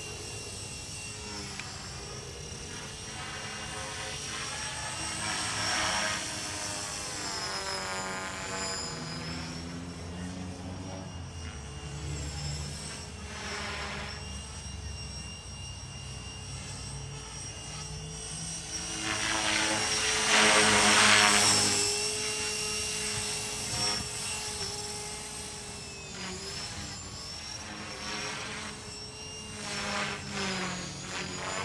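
HK450 electric RC helicopter in flight: the steady whine of its motor and rotors, wavering in pitch as it manoeuvres, and growing louder about two-thirds of the way through as it comes closer.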